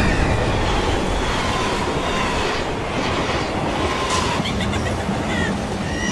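Loud, steady rumbling noise with a few faint high squeals, about two and four seconds in.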